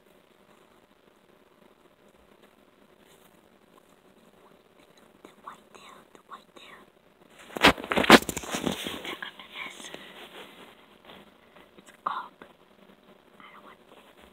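Faint whispering and rustling, broken about eight seconds in by two sharp knocks half a second apart and a second or so of noise, with another short burst near the end.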